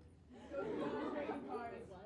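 Indistinct voices talking in a large room, starting about half a second in; no other sound stands out.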